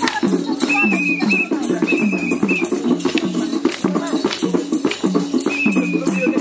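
Folk music accompanying a Mayur (peacock) dance: a repeating low melody over steady rattling percussive beats, with short wavering high notes twice in the first half.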